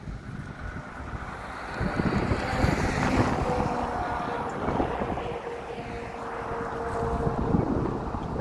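Wind buffeting the microphone over road noise, with a dump truck's engine passing close by. It gets louder about two seconds in.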